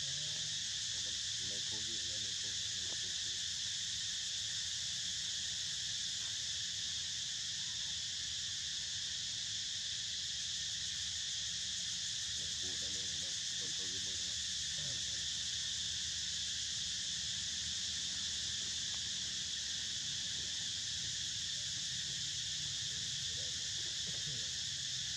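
A steady, unbroken chorus of insects, a high-pitched shrill that holds at one level throughout. Faint voices can be heard in the background now and then.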